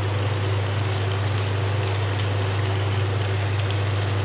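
Chicken in thick pepper masala sizzling steadily in a pan: a continuous frying hiss, over a steady low hum.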